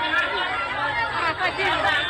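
Many voices talking over one another in a dense crowd babble: parents arguing over places in a queue.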